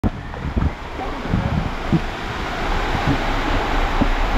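Water rushing down a tube water slide as an inflatable raft tube is launched and slides into the enclosed flume, the noise building as it picks up speed, with wind buffeting the microphone and low thumps from the tube.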